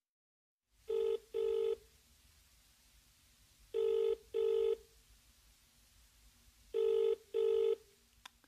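British-style double-ring telephone ringing tone of a call being placed: three pairs of short rings, about three seconds apart, heard while the call connects.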